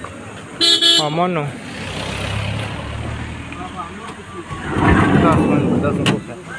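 A short vehicle horn toot about half a second in, followed by a vehicle engine running with a low hum that grows louder near the end.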